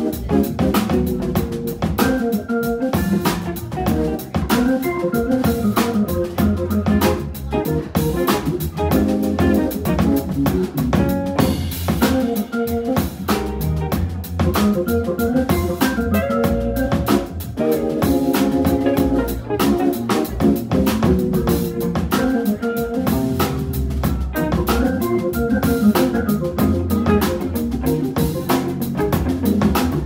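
Hammond B3 organ trio playing jazz: sustained, chording organ over a busy drum kit, with a hollow-body electric guitar in the band.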